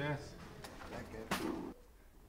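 Brief, untranscribed bits of a man's voice: one short low utterance at the start and another about a second and a half in. The sound then drops to quiet background near the end.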